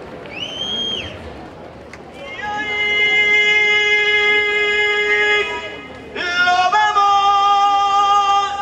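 Music opening with a singer's long held notes: one steady note lasting about three seconds, then after a short drop a higher held note that steps up in pitch. A short high whoop comes just before, near the start.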